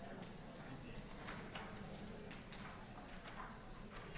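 Faint room noise in a conference hall: a low steady background with scattered light knocks and taps from people moving about, irregular and a couple a second.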